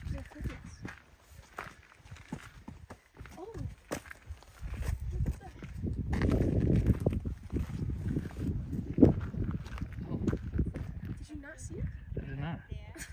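Footsteps on a gravelly rock trail at a walking pace, a little over one step a second, over an uneven low rumble of wind on the microphone that grows louder about halfway through.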